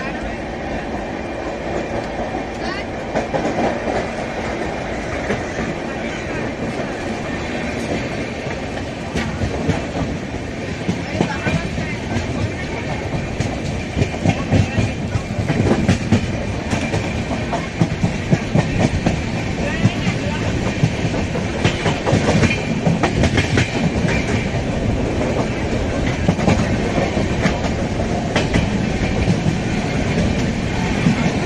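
Passenger express train pulling out and gathering speed, heard from an open coach door: a steady running noise with the wheels clattering over rail joints and points, the clicks coming more often and louder in the second half.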